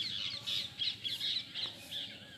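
Many birds chirping at once, a dense, overlapping twitter of short high calls that rises and falls in quick waves.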